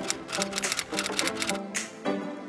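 A rapid run of typewriter keystroke clicks, about six a second, over steady background music.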